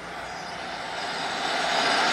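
A steady rushing noise with no pitch, growing slowly louder.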